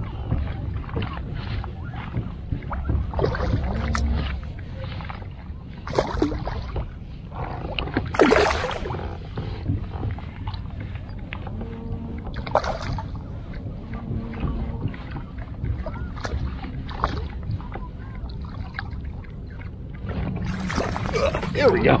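Landing a hooked rainbow trout from a kayak: steady wind and water noise with scattered knocks and clicks of rod, reel and gear handling, and a few louder sudden noises, the loudest about eight seconds in.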